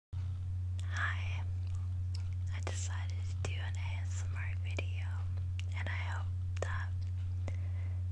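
A woman whispering softly, with a few small clicks between phrases, over a loud, steady low hum that runs under everything.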